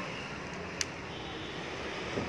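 Volkswagen Vento's remote central locking working off the key fob: a single sharp lock click about a second in, over a low steady background hum.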